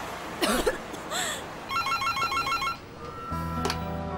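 Electronic telephone ringer trilling rapidly for about a second. Soft background music with held chords comes in near the end.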